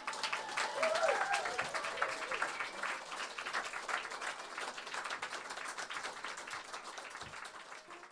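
Audience applauding after a song, with a voice calling out briefly about a second in; the clapping slowly thins and dies down.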